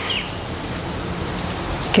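Steady outdoor background hiss with no speech, and a short high bird chirp right at the start.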